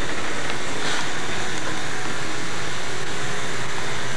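A steady, even rushing noise from a running machine, such as a blower or fan, unchanged in level.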